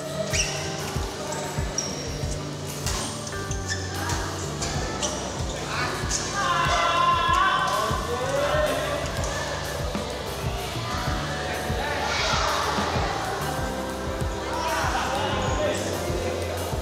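Doubles badminton play on an indoor court: repeated short, sharp knocks of racket strings on the shuttlecock and of players' shoes on the court floor, with players calling out about six seconds in and again near the end.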